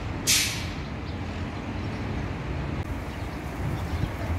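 Steady low outdoor rumble, with one short, sharp hiss about a third of a second in.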